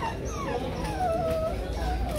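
A dog whining: a drawn-out whimper that falls in pitch and then holds for about a second.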